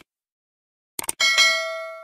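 Subscribe-button animation sound effect: quick clicks at the start and again about a second in, followed by a bright notification-bell ding whose several ringing tones fade away.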